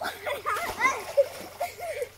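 Bathers splashing in river water, starting suddenly, with excited voices calling out over the splashes.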